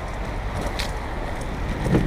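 Inline skate wheels rolling fast over paving tiles, a steady low rumble mixed with wind buffeting the microphone, with a brief click about three quarters of a second in.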